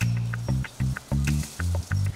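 Background music with a bouncy, staccato bass line: short low notes, about four a second, each with a light click on top.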